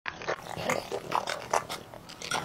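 A dog eating: licking and smacking its mouth over food, heard as a quick, irregular run of short clicks several times a second.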